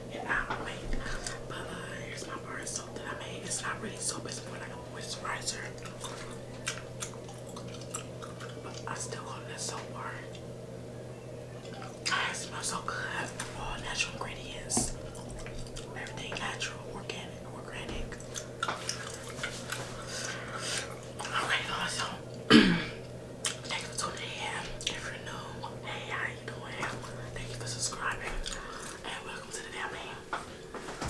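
Bubble gum chewed close to the microphone: a run of wet clicking and smacking mouth sounds, with one louder sudden sound a little past two-thirds of the way through. A steady low hum sits under it and stops near the end.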